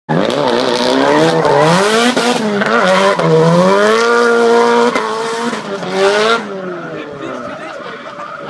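Mazda RX-7 drift car pulling away hard and drifting, engine revs rising and falling several times, with tyres squealing. The sound drops away sharply after about six seconds as the car gets further off.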